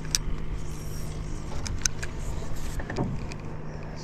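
Steady low hum of a small electric motor, with a few sharp clicks from a spinning reel being handled.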